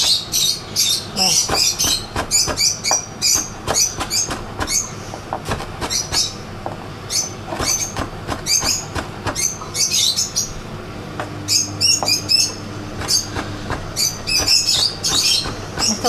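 Chef's knife chopping fresh parsley on a wooden cutting board: quick, irregular knocks of the blade on the wood. A bird chirps over the chopping.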